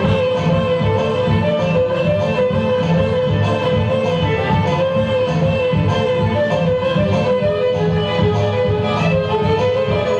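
Live band music with a violin playing a melody of long held notes over a steady, dense low backing.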